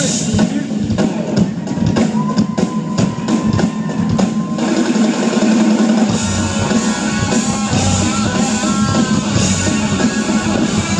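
A rock band playing live: drum kit and electric guitars through the stage PA, with a long held guitar note in the first half. From about six seconds in the drum hits thin out and the guitars carry the music with bending lines over a low bass line.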